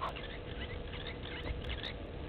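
Egyptian goose goslings peeping: rapid, short, high-pitched chirps, several a second, over a low background rumble.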